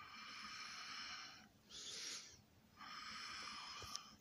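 Breathing heard close up: long hissing breaths alternate with shorter ones, about one in-and-out every two seconds, with a faint click near the end.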